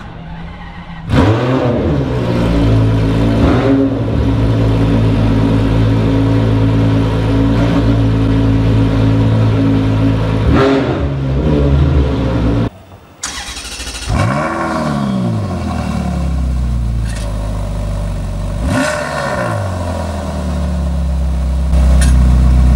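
Ferrari 599XX's 6.0-litre V12 starting about a second in, flaring up and settling into a steady high idle with short throttle blips. After a brief break, the engine revs up and falls back to idle, with one more blip near the end.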